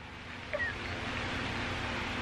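Breathy, wheezing laughter that is nearly silent: a hissing breath growing louder, with a brief squeak about half a second in.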